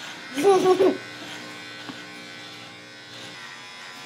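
Electric beard trimmer buzzing steadily as it cuts beard hair from the jaw and chin. A short burst of voice breaks in about half a second in.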